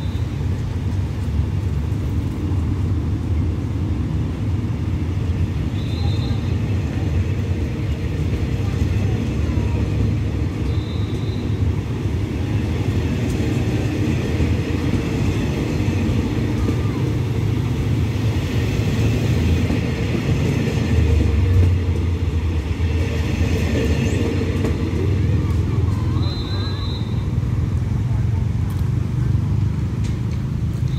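Low, steady diesel engine drone from a stopped passenger train running at idle.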